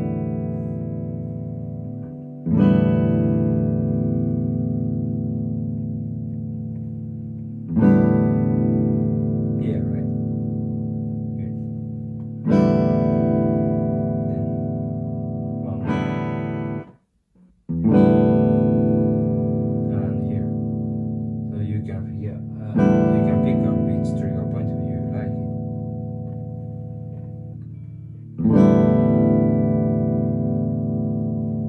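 Hollow-body electric jazz guitar (Gibson L-5CES with a P-90 pickup) played clean through a Yamaha THR10II amp: a chord strummed and left to ring and fade, seven times, about every five seconds. The tone shifts as the amp's middle EQ knob is turned in search of its sweet spot.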